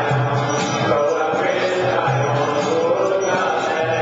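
Devotional group chanting (kirtan) with instrumental accompaniment, steady and continuous.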